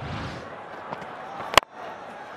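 A low whoosh from the replay-transition sound effect, then about one and a half seconds in a single sharp crack of a cricket bat striking the ball, the loudest sound here.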